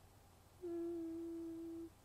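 A woman's closed-mouth "mm" hum: one steady, level note held for a little over a second, starting about half a second in.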